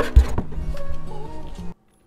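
Background music with steady tones and a single low thump just after the start. The sound cuts off suddenly to silence near the end.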